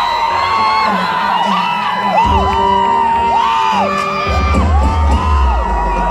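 A live pop band plays a Latin-flavoured song with brass and drums, recorded from within the crowd, while fans scream and whoop over the music. A deep bass line comes in about two seconds in and again from about four seconds.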